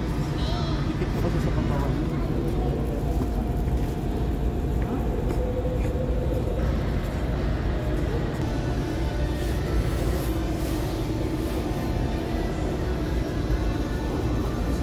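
Store ambience: a steady low hum and rumble with indistinct background voices.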